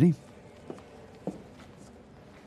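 Two soft footsteps, a little over half a second apart.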